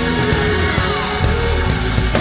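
Old-school gospel music, an instrumental stretch between sung lines, with a note gliding downward about a second in.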